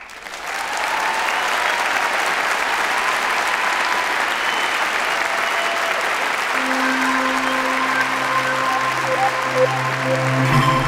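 Large audience applauding: the clapping swells within the first second and then holds steady. Past the middle, a few held notes of closing music come in over the applause.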